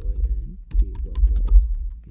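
Typing on a computer keyboard: an irregular run of quick keystrokes, under a man's low, mumbled voice.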